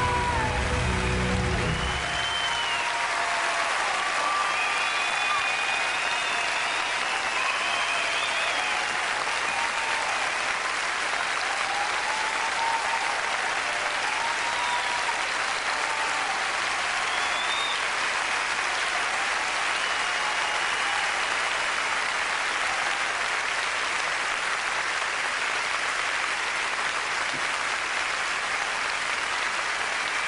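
A large live audience applauding and cheering, with scattered shouts, steady throughout. In the first two seconds the singer's last held note, with vibrato, and the band's final chord die away.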